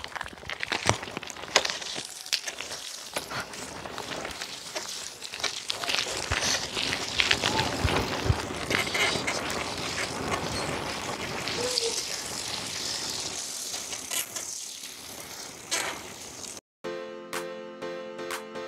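Bicycle setting off along a gravel path: tyre noise and scattered clicks over a steady rushing noise. Near the end this cuts off and music begins.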